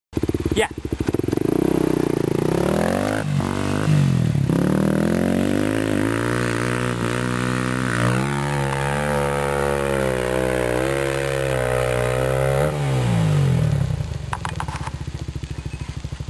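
Kawasaki KLX250S single-cylinder four-stroke dual-sport bike with an FMF Q4 exhaust, working hard up a steep sand hill. The engine revs rise and dip a few times in the first seconds, hold high and steady, then fall away about 13 seconds in to a slow, lumpy low-rev running as the bike comes to a stop short of the top.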